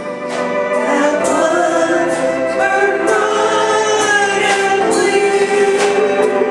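A few voices singing a gospel hymn through a PA with keyboard accompaniment, over a light ticking beat about twice a second.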